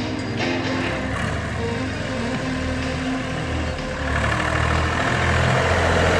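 A 1967 Massey Ferguson 135 tractor's engine running as the tractor drives toward the listener, growing louder over the last couple of seconds, with music playing over it.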